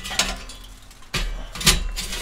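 Steel charcoal baskets clanking and scraping against the kettle grill's metal grate as they are set in place. There is one knock just after the start and a louder clank about a second and a half in.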